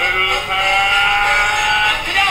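Cartoon soundtrack playing from a tablet's small speaker: one long held note with several overtones.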